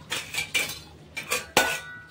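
Flat metal spatula scraping and knocking against a metal kadhai while thick chicken curry is stirred: several strokes, the loudest near the end with a brief metallic ring.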